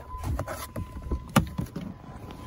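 Rustling and knocking of a phone camera being handled as a person climbs out of a parked car, with a sharp click about one and a half seconds in.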